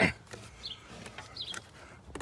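Faint scraping and small ticks of a hand working an old, hardened rubber hose onto a plastic PCV valve on an engine that is not running.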